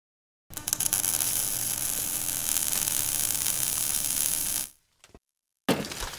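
Sound effects for an animated logo reveal: about four seconds of loud, hissy, crackling static-like noise over a faint hum that cuts off suddenly, then near silence, then a sudden hit near the end followed by crackling as stone rubble falls away from the logo.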